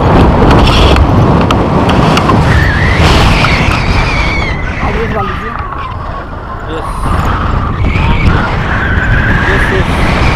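Wind rushing and buffeting over the camera microphone during a tandem paraglider flight, a loud continuous rumble that eases briefly around the middle. Thin, wavering high-pitched sounds rise and fall over it now and then.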